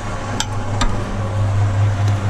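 Cement mixer running with a steady low hum while mortar drops from the tipped drum. A steel trowel knocks twice against the drum, sharp clinks about half a second and just under a second in, as it scrapes mortar out.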